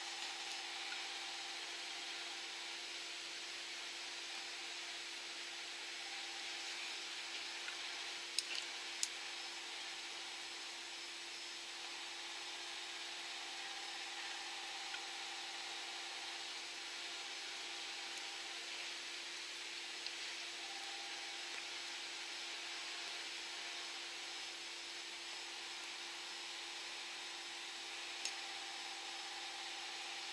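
Steady background hiss with a faint hum, broken by a few small, sharp clicks about a third of the way in and again near the end, as small scissors cut and handle strips of nail-art tape.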